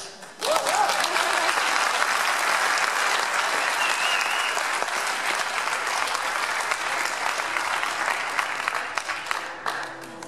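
Audience applauding, breaking out about half a second in and going on for over nine seconds, with a short whoop near the start and a brief whistle about four seconds in.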